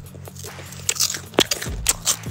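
Close-miked crunchy food being bitten and chewed, a quiet stretch and then three sharp crunches about half a second apart in the second half.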